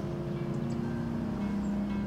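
Background score music: low, steady held notes with no melody, under the pause in dialogue.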